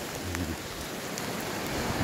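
Steady hiss of seaside outdoor noise, wind and gentle surf, with a few faint ticks and a brief low rumble about a quarter of a second in.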